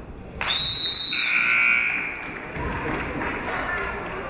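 A shrill, high-pitched cheer from the crowd, starting about half a second in and lasting about a second and a half, dropping in pitch partway through; it greets a made free throw.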